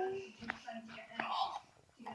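A held voiced note trails off at the start, then faint whispering with a sharp click about half a second in. The sound drops out completely shortly before the end.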